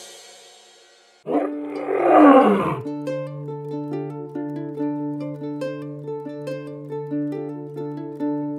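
A single lion roar starting about a second in and lasting about a second and a half, its pitch sinking at the end. Light background music with short plucked notes over a steady low note follows.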